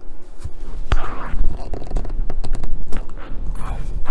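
Hands working a rubber model-lorry tyre and its plastic wheel rim on a towel: rubbing and scraping, a sharp knock about a second in, then a run of small clicks and low thumps. The tyre is still too stiff to take the rim.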